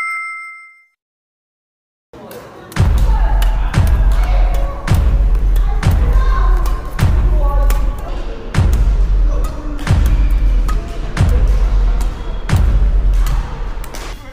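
A short ringing chime fades out, then a brief gap, then loud background music with a heavy bass beat that pulses about every second and a bit.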